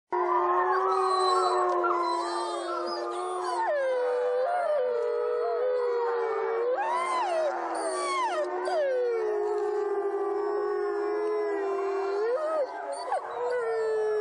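A chorus of long, drawn-out howls, several voices overlapping and sliding up and down in pitch.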